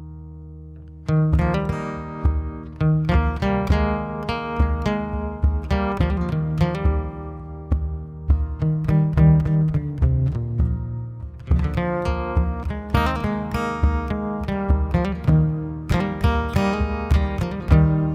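Acoustic guitars playing an instrumental introduction: a chord rings for the first second, then picked notes carry on steadily through the rest.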